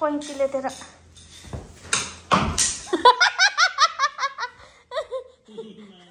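Laughter: a quick run of high-pitched giggles, about five a second, starting about halfway through.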